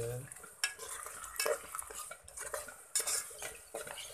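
A cooking utensil scraping and clicking against a rice cooker's non-stick inner pot as rice vermicelli is stirred through with chilli paste, in irregular strokes, over a light sizzle from the hot pot.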